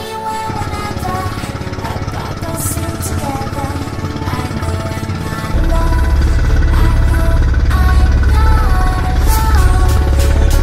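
Background music with a melody, over a motorized outrigger boat's engine running with a steady low rumble. The engine gets much louder about halfway through.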